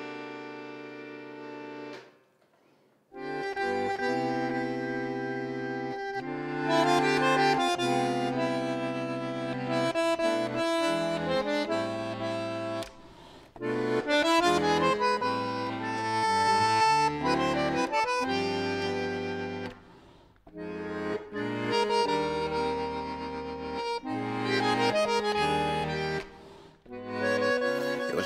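Solo bandoneon playing a slow tango passage in full sustained chords with a melody over them. A held chord dies away about two seconds in; after a short silence the playing resumes, pausing briefly between phrases several times.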